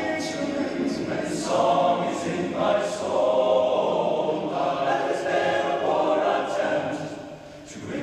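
Large all-male a cappella choir singing in harmony, with no instruments. The singing fades briefly near the end, and the next phrase starts right after.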